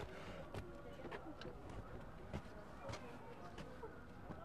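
Quiet outdoor background with a few soft, irregular footsteps as two people walk up to a doorway, and faint distant voices.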